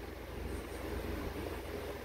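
Faint, steady background rumble and hiss, with no distinct event: the room's background noise in a pause between words.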